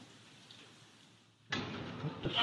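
Faint, distant bangs echoing up a stairwell from a floor below, then a sudden rush of noise about one and a half seconds in.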